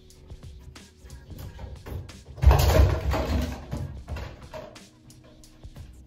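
Handling clatter of a hanging shower caddy and its bottles being lifted off the shower head, with a loud rattling thump about two and a half seconds in and smaller knocks around it. Music plays in the background.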